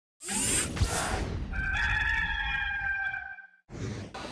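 Graphics intro sound: a whoosh with a hit, then a rooster crowing in one long call, ending shortly before a second whoosh.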